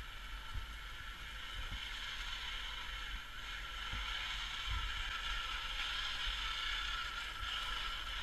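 Radio-controlled truck's electric motor and gears whining steadily, growing louder from about halfway through as the truck drives closer.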